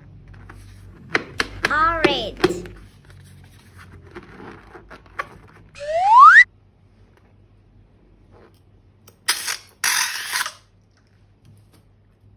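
Cartoon sound effects: clicks and a high, chirpy cartoon-like voice about two seconds in, then a loud rising slide-whistle boing about six seconds in, followed by two short noisy bursts near ten seconds.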